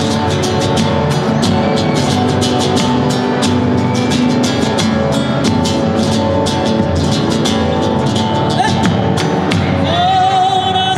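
Live Argentine folk music played without singing: strummed acoustic guitar over a bombo legüero drum keeping a steady beat.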